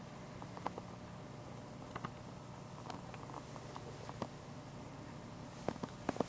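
Low steady hum with a few light clicks scattered through, and a quick run of clicks near the end.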